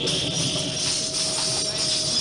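Radio-drama sound effect of a rocket ship setting down: a steady, loud, hissing, jangling rush of noise.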